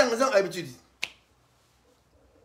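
A short, loud vocal utterance with falling pitch, then a single sharp click about a second in.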